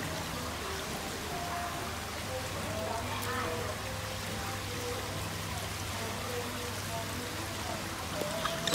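Steady running, trickling water over a low, even hum.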